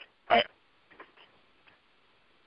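One brief syllable or throat sound from a voice over a phone line, then a couple of faint clicks on the line.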